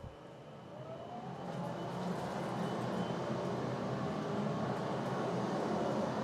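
Muse 3D CO2 laser engraver running a raster engraving job: its fans start a steady rushing noise that builds up over the first two seconds, with a whine rising in pitch as they spin up.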